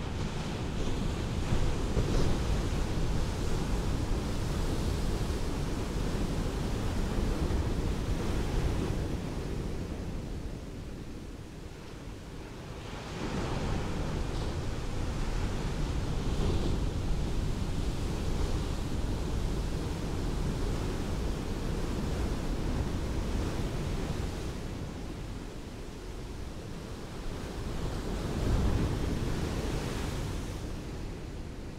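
Ocean surf washing up a beach in long surges, easing off about ten seconds in and again after about twenty-four seconds, with a fresh surge near the end.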